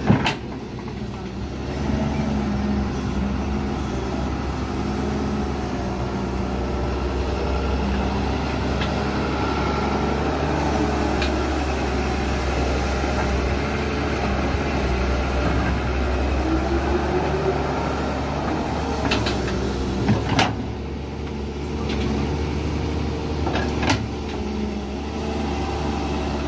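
Doosan 140W wheeled excavator's diesel engine running steadily under load as it digs and swings soil, with a few sharp knocks from the bucket: one just after the start, one about twenty seconds in and one near the end.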